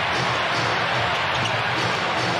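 Steady arena crowd noise and court sound during a live basketball game, with no single event standing out.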